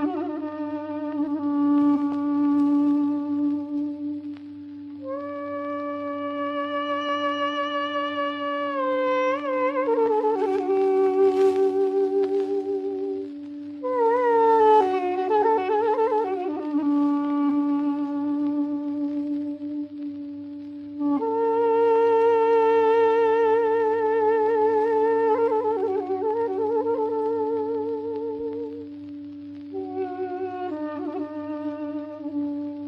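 Film score: a solo woodwind plays a slow, ornamented melody with vibrato over a continuous held drone note, in long phrases with brief breaks between them.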